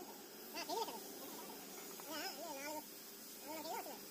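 A high-pitched voice making short, warbling babbling sounds in three brief phrases about a second apart, over a faint steady hum.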